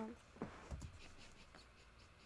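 The end of a spoken word, then a faint stifled laugh muffled by a hand over the mouth: two short, soft breathy sounds about half a second and just under a second in.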